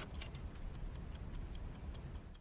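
Mechanical wind-up kitchen timer ticking quietly and evenly, about four ticks a second, as it counts down.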